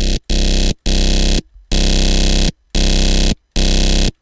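Buzzy synthesizer carrier tone from Ableton's Operator, built from stacked square-wave oscillators modulated by a sine wave. It is played as a run of held notes with brief gaps between them, through a saturator whose drive is turned up to give it a harder edge.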